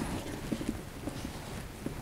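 Kitchen knife slicing an onion on a wooden cutting board: a few soft knocks of the blade against the board.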